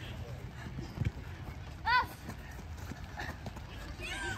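Children's football match: a dull thud of the ball about a second in, then one short high-pitched shout from a child, over a low background of distant voices.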